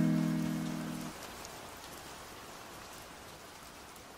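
The last held chord of a lofi remix fades out within the first second, leaving a steady soft hiss of rain ambience, part of the track's mix, with a few faint drop-like clicks.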